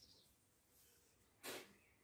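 Near silence broken once, about one and a half seconds in, by a single short breathy puff, like a sharp exhale from someone exercising.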